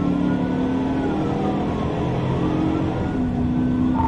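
Police siren wailing in slow rises and falls, about two cycles, over a patrol car's engine accelerating hard at highway speed, heard from inside the cruiser.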